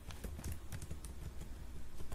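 Typing on a computer keyboard: a quick, irregular run of key clicks as about six characters are typed, over a faint steady low hum.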